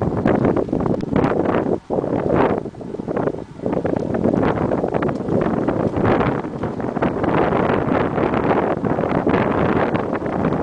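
Wind buffeting the microphone of a camera riding along on a moving bicycle: a loud, uneven rush that dips out briefly about two seconds in.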